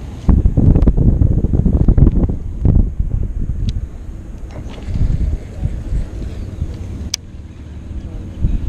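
Wind buffeting the camera microphone, a gusting low rumble that comes on suddenly and is loudest for the first three seconds before easing. A single sharp click comes near the end.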